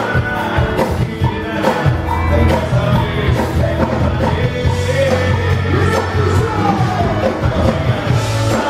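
Loud live band music with a male lead vocal singing over a steady beat of drums and bass, with electric guitars.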